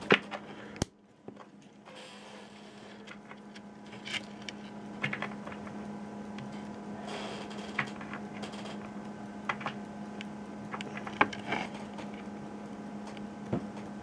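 A sharp click about a second in as a toggle switch is flipped, then scattered small clicks and taps of handling as multimeter probe clips are attached to an LED strip, over a steady low hum.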